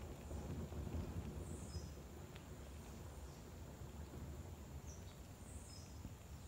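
Faint open-air ambience: a steady low rumble with a bird calling twice, each call a quick falling whistle that ends in a short steady note, about a second and a half in and again near the end.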